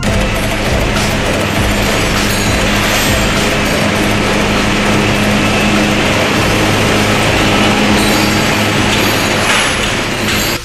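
Sugar mill cane-handling machinery running loudly and steadily, with an overhead crane hoist lowering a chained bundle of sugarcane onto the cane carrier conveyor. A continuous mechanical clatter rides over a steady motor hum.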